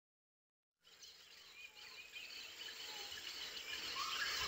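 Dead silence, then about a second in a rainforest ambience fades in and grows louder: a bed of insects with short bird chirps over it.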